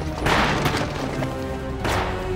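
Gunshots over dramatic background music: three sharp shots, one just after the start, one about two-thirds of a second in, and a loud one near the end.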